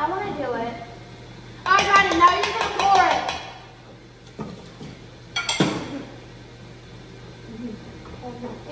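Wordless 'mm' vocal sounds from children, loudest in a burst about two seconds in, then light clinks and one sharp clatter of kitchenware about five and a half seconds in.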